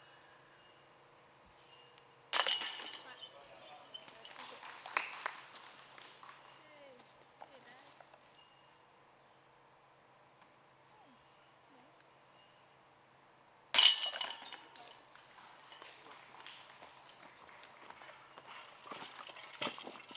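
Disc golf putts striking a basket's hanging metal chains, twice: a sudden jingling clash about two seconds in and again about fourteen seconds in, each rattle fading over a couple of seconds.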